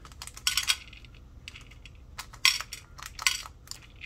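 Small crystal bunny nail charms being tipped from a plastic bag into a clear plastic tray: the bag crinkles and the charms click onto the tray in three short bursts, about half a second, two and a half and three and a quarter seconds in, with light ticks between.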